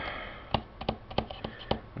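About six light, irregular clicks and taps over faint room noise.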